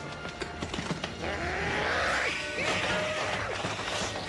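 Animated-film soundtrack: music mixed with sound effects, getting louder about a second in, with wavering rises and falls in pitch through the middle.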